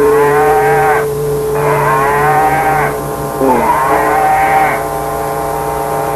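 Lo-fi noisecore recording: a single distorted note held steady under three drawn-out, wavering moo-like cries, each about a second long.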